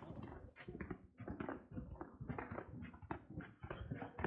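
Footsteps on a paved trail, an uneven run of several steps a second as people walk down a steep path.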